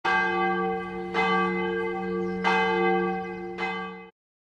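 A church bell struck four times, about a second and a quarter apart, each stroke ringing on under the next with a deep steady hum.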